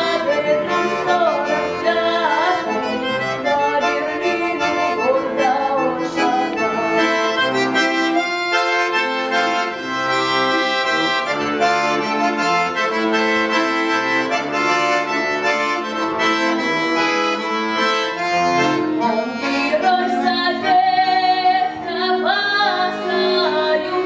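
A bayan (Russian button accordion) playing the accompaniment to a Russian folk-style song, with a girl's solo voice singing over it.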